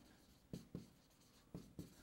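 Faint chalk strokes on a chalkboard: about four short taps and scrapes of chalk writing, otherwise near silence.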